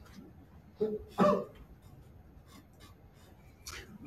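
Quiet room tone with two short vocal sounds from a person about a second in, the second louder, like a cough or throat-clearing.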